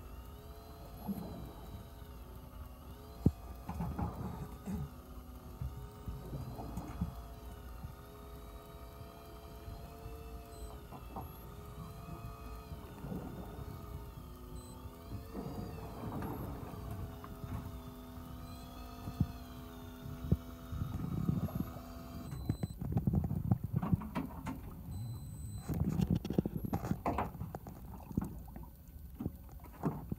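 Electric fishing reel motor winding in line against a hooked fish, a whine that wavers up and down in pitch as the fish's pull changes. The winding stops suddenly about 22 seconds in, leaving knocks and rumbling noise.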